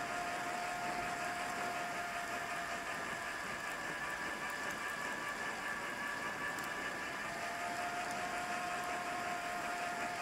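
Bicycle tyres rolling on a paved trail with steady wind rush on the microphone, plus a faint steady whine at a few set pitches that fades out midway and comes back near the end.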